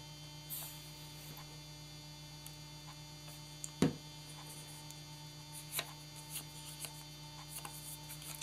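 Steady electrical mains hum, with a few light taps and rustles of paper strips being handled on a tabletop. The sharpest tap comes about halfway through.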